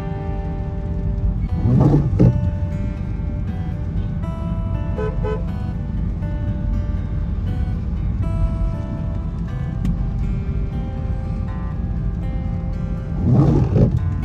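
Background music over the steady low rumble of a car driving on a wet road, with two brief louder whooshes, about two seconds in and near the end.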